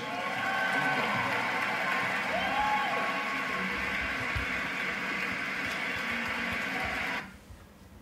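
Audience applause from a video of an award ceremony, played through the room's speakers. It cuts off suddenly about seven seconds in when the playback is stopped.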